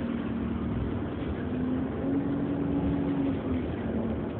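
Alexander Dennis Enviro400 Hybrid double-decker bus on the move, heard from inside the passenger saloon: a steady running drone with a humming tone that steps up a little in pitch about two seconds in and stops shortly before the end.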